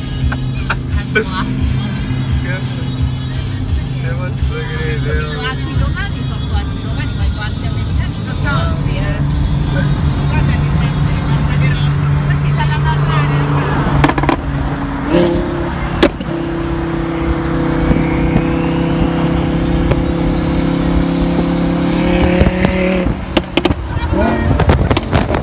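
Twin-turbocharged Audi R8 engine, modified with exposed intake, turbochargers and exhaust, droning steadily as it cruises at highway speed, shifting to a higher steady pitch about fifteen seconds in. Voices or singing sound over it in the first half.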